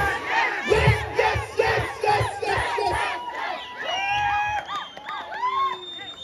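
Concert crowd cheering and shouting, many voices at once at first, thinning to a few long held shouts.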